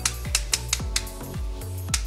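Background music with a steady beat: repeated low kick-drum hits and sharp cymbal-like ticks over held tones.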